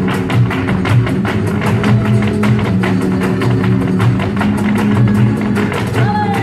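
Live flamenco music: acoustic guitar playing under a fast, dense run of sharp percussive taps from the dancers' heeled footwork (zapateado).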